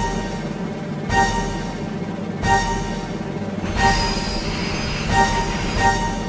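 A train running at speed, with a high wheel squeal from about four seconds in until a second and a half later, laid over background music with notes recurring about every second and a half.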